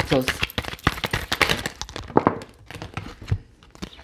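Tarot cards shuffled by hand: a quick run of papery slaps and rustles, densest in the first two seconds, then a few scattered ones.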